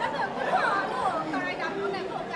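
Several voices chattering over one another at a moderate level.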